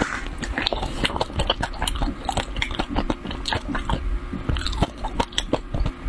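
Close-miked chewing of a mouthful of chili-coated food: a steady run of quick wet clicks and mouth smacks, several a second.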